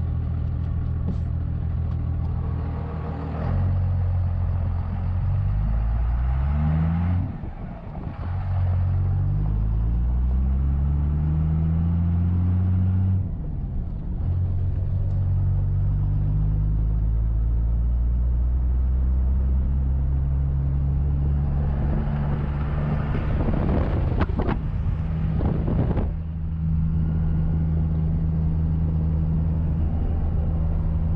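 Modified 12-valve P-pump Cummins diesel in a 1995 Ford F-350, with compound turbos and a full 5-inch exhaust, heard from inside the cab as the truck pulls away. The revs climb and drop twice, about seven and thirteen seconds in, as gears are changed, then the engine holds a steady drone at cruise.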